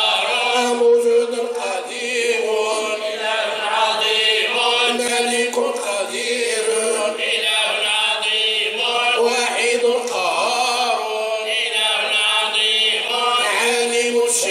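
Men's voices chanting an unaccompanied Sufi devotional song (madih), in long held notes that waver and ornament, with no drums or instruments.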